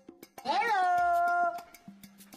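A single high, drawn-out vocal call, a little over a second long, rising sharply at the start, then easing down and holding steady before fading.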